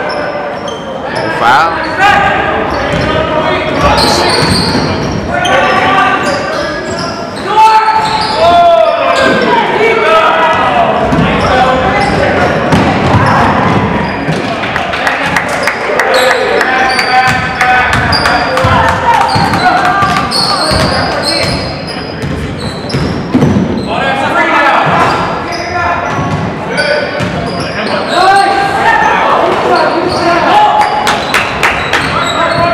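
Basketball game sound in a gym: a ball dribbled on the hardwood floor, with players and spectators calling and shouting throughout.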